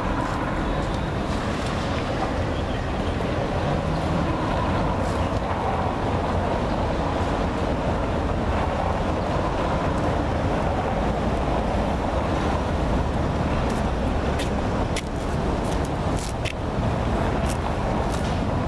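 Steady urban street noise: a continuous traffic hum with a heavy low rumble, and a few faint clicks near the end.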